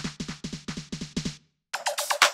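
Programmed electronic drum loop played through Ableton Live 10's Drum Buss, with the transient control being adjusted. A fast run of hits with low thumps that slide down in pitch stops short about one and a half seconds in. A quarter-second later it restarts with a different pattern.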